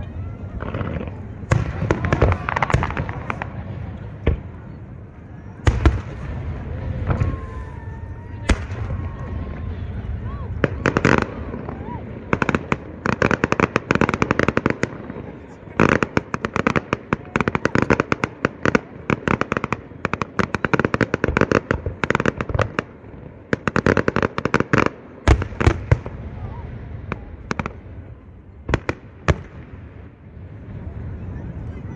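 Aerial fireworks: separate booming shell bursts, then a long dense run of rapid crackling from crackle-star shells through the middle, with a few more booms near the end.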